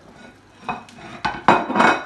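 A spatula knocking and scraping along a metal baking tray as it is worked under a baked pasty, with a couple of sharp knocks and then a louder scrape and clatter near the end.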